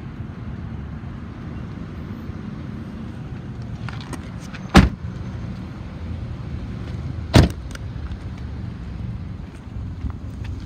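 Two car doors of a 2011 Ford Focus SE shut with sharp thuds, the first about five seconds in and the second about two and a half seconds later, over the steady low hum of its idling 2.0-litre four-cylinder engine.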